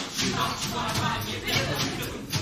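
Performers' voices from the stage, with the pit band's music playing underneath.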